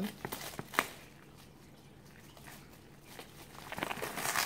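Plastic-film-wrapped parcel being handled: crinkling and crackling of the plastic wrap and packing tape, a few sharp crackles in the first second, quieter in the middle, and crinkling picking up again near the end.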